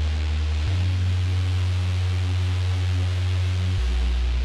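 Hard-dance bounce DJ mix in a drumless breakdown: a held deep bass note that changes pitch about a second in and again near the end, under faint sustained synth tones and a steady hiss.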